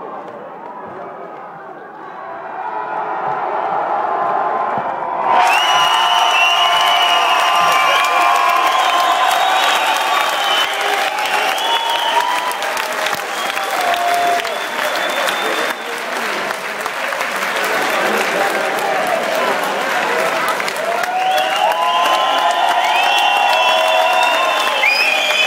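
Fight-night crowd cheering, shouting and applauding in an arena. It builds from about two seconds in and jumps sharply louder about five seconds in, with loud yelling close to the microphone.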